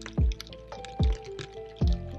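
Slow meditation music: three deep drum beats about 0.8 s apart under held synth notes that change pitch, with a scattering of dripping rain sounds over it.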